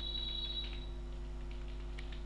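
A few faint, quick computer-keyboard keystrokes as a password is typed in, over a steady low electrical hum. A thin, steady high tone sounds through the first second or so.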